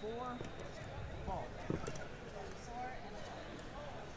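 Indistinct background chatter of many people in a large hall, with a couple of brief knocks about halfway through.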